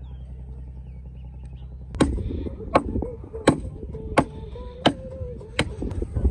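A steady low rumble, then, from about two seconds in, six sharp knocks at an even pace, about one every 0.7 seconds.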